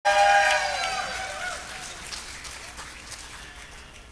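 Audience cheering and applauding: loud voices calling out together at the start, then the clapping dies away.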